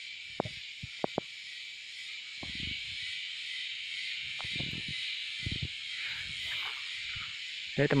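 Steady, high-pitched insect chorus in dense vegetation, with a few sharp clicks in the first second and a half and soft thuds of footsteps with leaf rustling through the middle.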